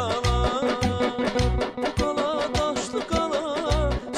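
Azerbaijani folk music: a garmon (button accordion) plays an ornamented, wavering melody over repeated drum beats.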